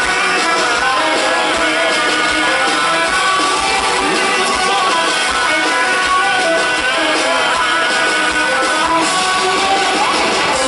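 Gothic metal band playing live, with electric guitars and drums at a steady, loud level.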